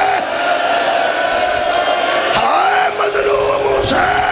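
A man's voice through a PA system in a long, drawn-out wailing cry, held on one note in the second half, over the cries of a mourning congregation.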